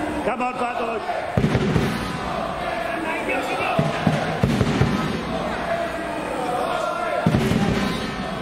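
Voices calling out over crowd noise in an echoing sports hall during a wrestling bout, with a few dull thuds.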